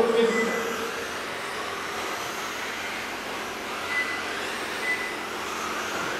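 Electric 1/10-scale RC touring cars racing on an indoor carpet track: a steady wash of high motor and gear whine that rises and falls in pitch as the cars accelerate and brake. Short high electronic beeps, typical of a race lap counter, sound once early on and twice about a second apart in the second half.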